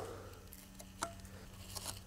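Cutters snipping into the fibres of a nylon ratchet strap that holds a dirt bike's rear shock compressed: a few faint clicks, the sharpest about a second in, as the strap is cut little by little.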